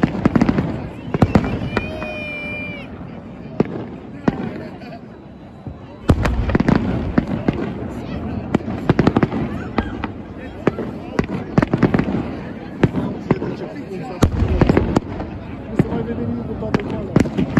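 Aerial fireworks bursting overhead: a string of sharp bangs and crackles that grows much denser and louder about six seconds in.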